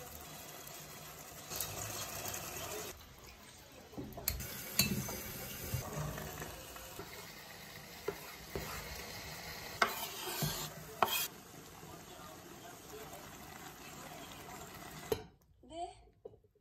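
Home-cooking sounds: a steady sizzling hiss of food cooking in a saucepan, with a spoon stirring and scattered clicks and knocks of utensils. The sound cuts off suddenly shortly before the end.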